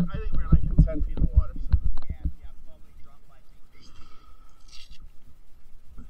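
Water slapping against a waterproof camera housing bobbing half-submerged at the surface, heard as muffled low thumps, louder in the first two seconds and quieter after. A short splashy hiss comes about four to five seconds in.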